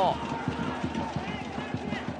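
Football match field sound: a fast, irregular run of low thuds under a general haze of stadium noise, with faint voices behind.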